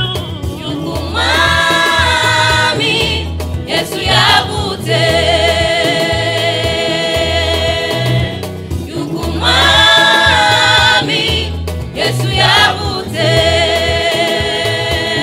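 Gospel choir singing through microphones over an amplified backing with a steady low bass line; the voices hold long notes, with short breaks between phrases.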